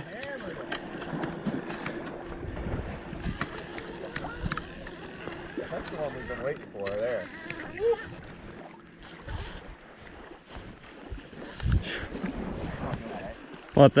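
River water washing around a wading angler, with wind on the microphone and scattered light clicks. A faint, distant voice comes in around six to eight seconds in.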